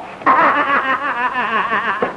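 A loud, high, wavering cackle of laughter from one voice, starting about a quarter of a second in and running on in one unbroken stream.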